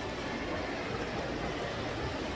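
Steady background din of a large public building, an even noise with no distinct events.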